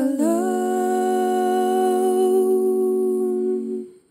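Layered a cappella chord sung by one woman's four multitracked voices, sliding up into pitch at the start and then held steady for nearly four seconds before fading out: the song's closing chord.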